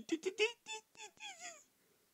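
Donald Duck's squawking, raspy duck voice: a quick run of short cries, the last few sliding down in pitch.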